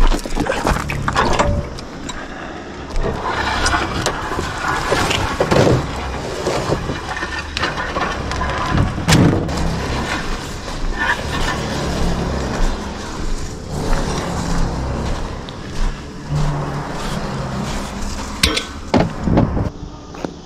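Plate compactor being dragged across a gravel and asphalt driveway with its engine off: its steel base plate scrapes and rattles unevenly over the ground.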